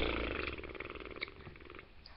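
A boy's raspy, breathy laugh that starts loud and trails off over about a second and a half.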